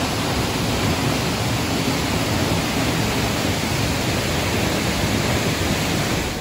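Steinsdalsfossen, a 50-metre waterfall, heard up close from the path behind the falling water: a loud, steady rush of water.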